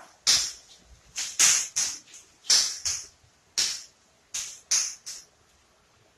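Footsteps on a hard tiled floor: a run of about ten short, sharp slaps, roughly two a second, uneven in spacing and loudness.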